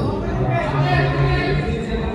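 Several people talking and calling out at once in a gymnasium, the words indistinct.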